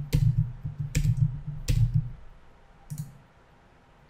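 Computer keyboard being typed on: about four separate keystrokes spread over the first three seconds, each a sharp click with a dull thud.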